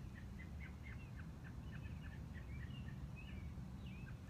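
A bird chirping faintly in the background, a quick run of short high chirps over a low steady rumble.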